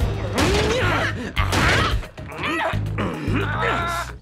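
Cartoon action soundtrack: background music under a robot scuffle, with several crashes and wordless grunts, the biggest hits about half a second and a second and a half in.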